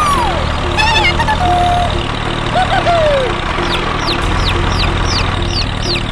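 A steady low engine hum, like a tractor running, under background music. A few sliding pitched notes come in the first half, and a run of quick, high falling chirps comes near the end.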